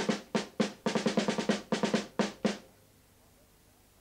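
A drum beaten with drumsticks: a run of strikes, some in quick clusters, that stops about two and a half seconds in.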